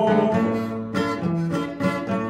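Acoustic guitar strumming a corrido accompaniment in an instrumental gap between sung verses, with several chord strokes.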